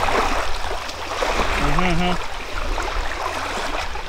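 Steady wash of wind and water on an open shore, with a low wind rumble on the microphone underneath.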